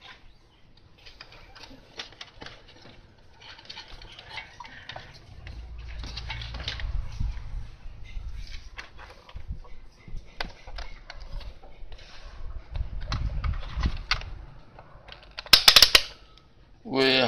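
Hands handling a TV circuit board and an analogue multimeter: scattered small clicks and knocks, with a low rumble through the middle and a sharp cluster of clatters just before the end.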